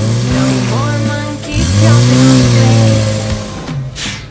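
Car engine revving sound effect, twice: two long revs, each rising a little in pitch and then falling away, as a toy car is pushed along.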